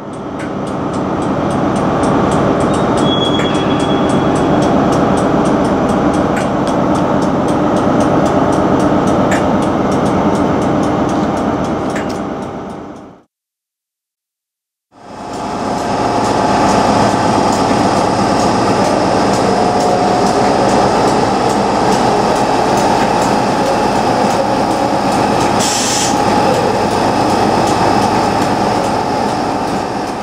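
A stationary Class 91 electric locomotive's cooling fans and equipment running with a loud, steady drone. The sound breaks off for about two seconds midway and then resumes.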